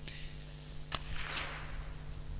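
A single rifle shot from the firing line, one sharp crack about a second in.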